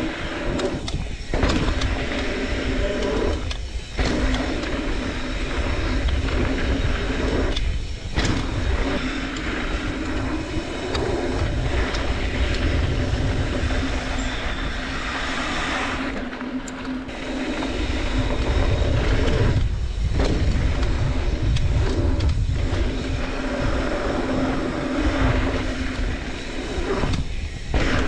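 Wind rushing over the camera microphone and knobby tyres rolling fast over dirt trail on a Trek Slash full-suspension mountain bike descent, with scattered knocks and rattles from the bike; the rush dips briefly a few times.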